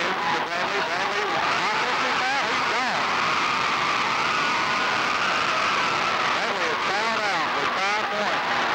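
Gymnasium crowd chatter and noise at a basketball game, with basketball shoes squeaking on the hardwood court: a run of squeaks about two seconds in and another near the end.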